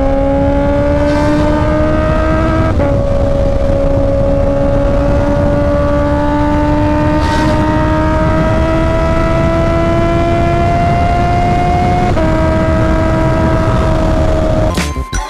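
Honda CB650R's inline-four engine pulling steadily at highway speed. Its note rises slowly as the bike accelerates, with two small drops in pitch where it shifts up, about three seconds in and near the end. Wind noise rushes underneath.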